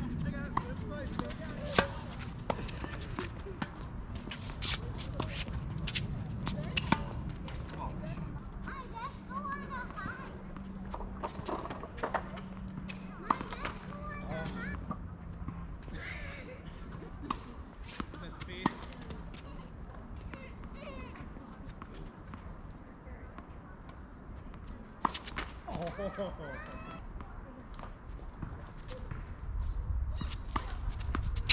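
Tennis rallying on an outdoor hard court: sharp pops of rackets striking the ball and the ball bouncing, at irregular intervals, with voices in the gaps.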